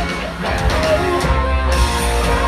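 A live pop-rock band playing with electric guitars over drums and a heavy bass, heard from the crowd in a large venue.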